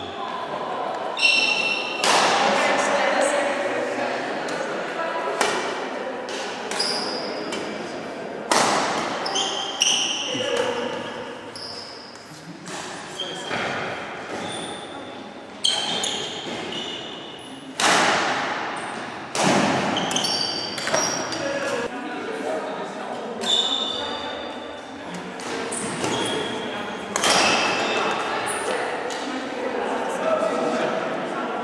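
Badminton rallies in a large hall: sharp racket hits on the shuttlecock and short high shoe squeaks on the wooden floor, echoing, over the voices of players and people around the court.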